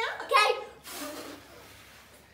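A short bit of speech, then a faint breathy rush of air as birthday-cake candles are blown out.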